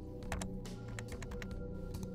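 Typing on a computer keyboard: a quick, irregular run of key clicks. Background music with held, steady tones plays underneath.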